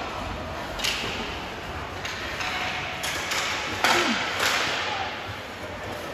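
Ice hockey play in an echoing rink: a handful of sharp clacks of sticks and puck, the loudest a little before four seconds in, over a steady background of rink noise.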